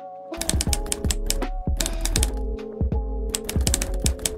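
Typewriter typing sound effect, a quick run of key clacks about five or six a second, over background music.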